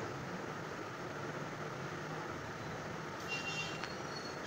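Steady background noise with no speech, and a faint high-pitched tone lasting about half a second near the end.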